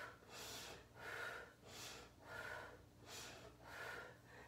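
A woman breathing in short, even, faint breaths, about six in four seconds, paced with her alternating leg switches during a Pilates abdominal exercise.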